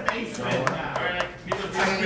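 Voices talking in the room, with a few light, sharp taps and clicks of sleeved playing cards being handled on the table.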